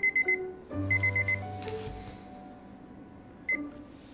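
Red digital interval timer beeping: two quick runs of about four sharp high beeps in the first second and a half, then a single beep near the end, marking the end of a timed set. Background piano music plays under it.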